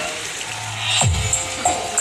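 Music played over a large PA sound system with Earthshaker power amplifiers: after a low steady hum, a track starts about a second in with a deep kick drum, crisp high ticks and held tones.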